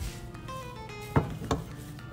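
Soft background music with sustained melodic notes, and two light knocks about a second and a half in as a mezzaluna blade is set down against the wooden cutting board.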